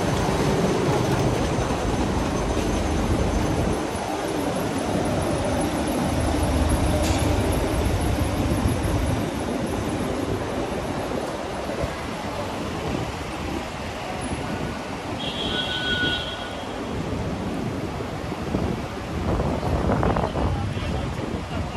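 Steady city street traffic noise with a low rumble, heavier at the start where a delivery truck's engine runs close by. A short high-pitched tone sounds briefly about three-quarters of the way through.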